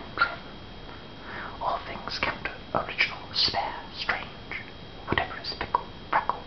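A man whispering speech: breathy, unvoiced syllables in irregular bursts.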